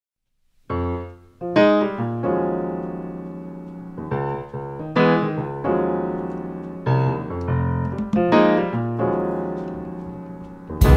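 Solo piano intro to a jazz-pop song: chords struck about once a second, each ringing out and fading, starting just under a second in.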